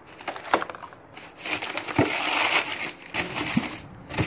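Clear plastic blister packs crinkling and crackling as they are handled and set down on a concrete floor. A few sharp knocks come early on; a denser stretch of crinkling with knocks runs through the middle and second half.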